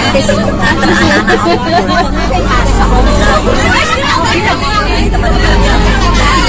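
Voices chattering inside a bus cabin, with the bus engine's low rumble underneath, which comes up about two seconds in.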